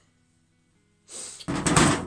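A forged steel hose pipe hanger set down on a steel workbench top, a brief loud metal clatter and scrape near the end.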